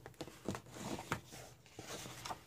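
Heavy paper of a fold-out coloring book rustling and crackling as a hand shifts and lifts it, in a run of short strokes with the sharpest crackles about half a second and a second in.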